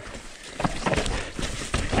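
Mountain bike rolling down a rocky dirt trail: a low rumble of tyres on dirt and stones, with a run of sharp knocks and rattles from about half a second in as the wheels and bike hit rocks.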